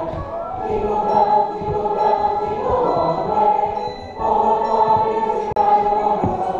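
A choir singing long, held chords, the notes shifting every second or so, with a brief dip in the sound about four seconds in.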